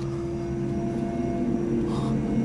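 Low, steady drone of a horror film's underscore: a few held tones over a low rumble, slowly swelling.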